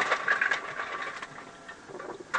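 Ice cubes clattering and rattling in a quick irregular run, loudest in the first second or so, then dying down.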